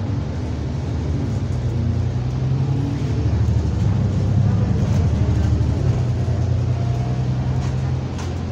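Engine of a London double-decker bus heard from on board while it drives, with a deep steady drone. It grows louder toward the middle, as under acceleration, then eases slightly.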